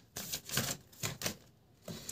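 Oracle cards being shuffled by hand: four or five short, soft flicks and slaps of the card edges.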